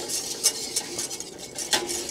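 A wire whisk scraping and clinking against a stainless steel saucepan in rapid, uneven strokes, stirring cold milk into a butter-and-flour roux for béchamel sauce.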